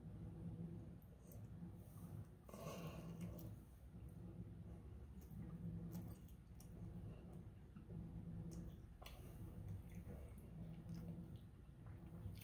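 Faint close-up mouth sounds of a man chewing a chicken wing dressed in hot sauce: soft wet chewing with scattered small clicks.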